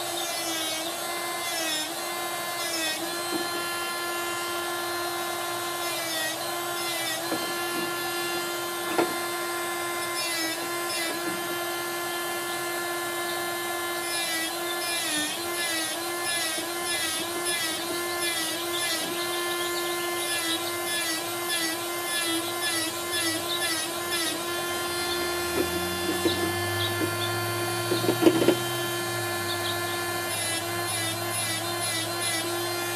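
Small corded handheld rotary tool running with a steady high whine, grinding the silvering and paint off the back of a glass mirror with a small disc. Its pitch dips briefly every few seconds, and a few short scrapes come near the end.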